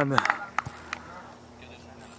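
A man's voice trailing off at the start, then quiet outdoor background with a steady low hum and a few faint clicks in the first second.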